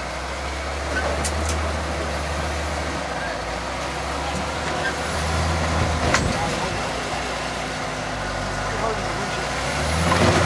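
Rock-crawling 4x4's engine running at low revs as it climbs slowly over boulders, pulling a little harder about five seconds in. A single sharp knock sounds about six seconds in.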